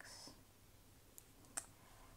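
Near silence with two faint clicks a little over a second in, from thin metal double-pointed knitting needles touching as stitches are picked up.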